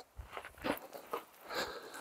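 A few quiet footsteps on dry, stony dirt ground, coming as separate short scuffs at an uneven pace.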